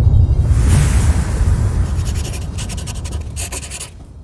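Intro sound effects: the deep rumble of a boom dies away under a rising hiss and crackle. Then, in the second half, comes a quick scratchy pen-on-paper writing sound, which stops near the end.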